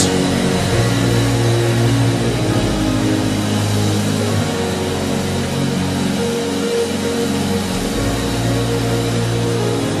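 A congregation praying aloud all at once, a dense mass of overlapping voices, over soft held instrumental chords. A low held note drops out about four seconds in and comes back about eight seconds in.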